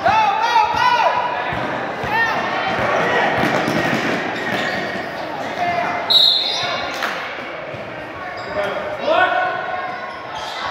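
Basketball game in a large, echoing gym: the ball bouncing and sneakers squeaking on the court floor, with indistinct shouts from players and the sideline.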